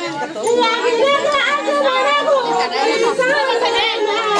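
Many women's voices at once, talking and calling over one another in a lively group.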